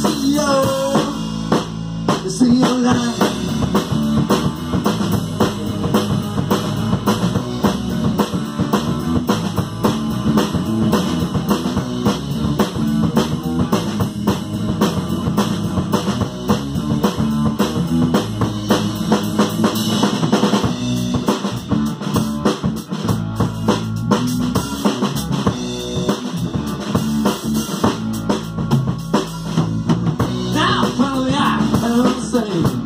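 Live band playing an instrumental passage: a drum kit keeps a steady, busy beat under electric guitar.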